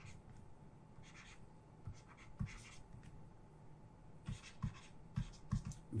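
Faint tapping and scratching of a stylus writing on a tablet, in short scattered strokes that come more often in the second half.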